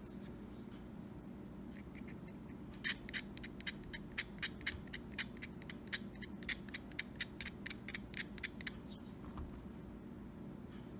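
A utility knife blade scraping graphite off a pencil lead into the nut slots of a cigar box guitar, to lubricate the slots for the strings. It comes as a quick run of short scrapes, about four a second, starting about three seconds in and stopping near the end.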